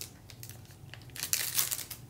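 A trading-card pack's plastic wrapper crinkling as it is torn open by hand, in a short burst of crackles in the second half after a quiet first second.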